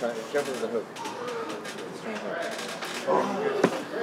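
Voices talking at lower level in the background, with a single sharp knock about three and a half seconds in.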